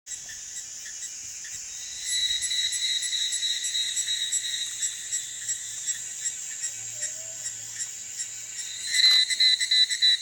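Evening cicada singing: a steady, high, finely pulsed trill. It swells louder about two seconds in, eases off, then swells again near the end.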